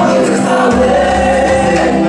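Christian worship music: a group of voices singing together over sustained chords and a bass line.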